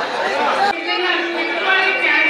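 Speech only: people talking, several voices at once, cut off abruptly about a third of the way in and followed by further talking.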